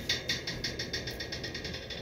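Boiled-down maple sap dripping through a paper cone filter: a fast, even run of light ticks, about ten a second, fading near the end.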